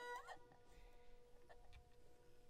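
The music of a Khmer traditional ensemble dying away, close to silence: a short rising slide right at the start, then faint strings ringing on with a few light ticks.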